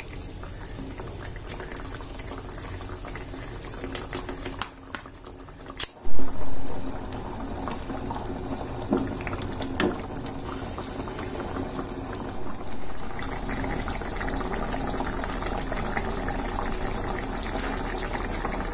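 Prawn curry gravy simmering and bubbling in a non-stick wok, a steady bubbling hiss. A brief loud burst comes about six seconds in.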